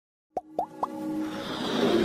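Animated logo intro sound effects: three quick rising plops about a quarter second apart, then a whoosh that swells louder over synth music.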